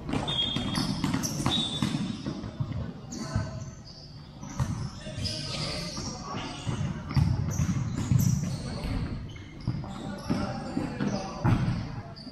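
Futsal ball being kicked and bouncing on the court, in irregular sharp knocks, with players' voices calling out, echoing in a large hall.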